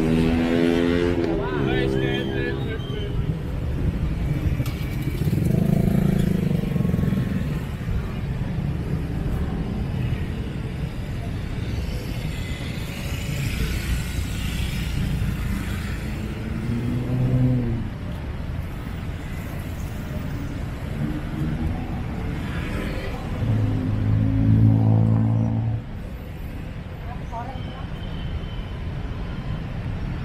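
Busy night-street ambience: voices of passers-by and passing motor vehicles over a steady background din of traffic and crowd.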